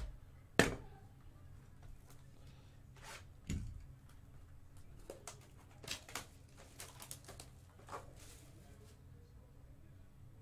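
A cardboard trading-card hobby box being handled and opened by hand. There is a sharp tap about half a second in, then scattered clicks, rustles and a soft thump as the box is turned and its packaging worked.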